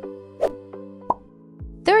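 Light background music with short cartoon pop sound effects, each a quick rising blip, about half a second in and again about a second in, as quiz graphics pop onto the screen. Deep beat thumps come in near the end.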